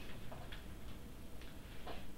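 Faint regular ticking, about two ticks a second, over a low steady hum in a quiet room.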